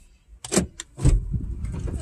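A car door opening with a few sharp clicks, and a person getting into the car, with a heavy low thump about a second in, followed by rustling.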